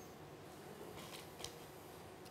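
Near silence: quiet studio room tone with one faint short click about one and a half seconds in.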